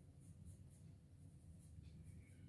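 Faint scratching of a pencil shading on sketchbook paper: a few short, light strokes.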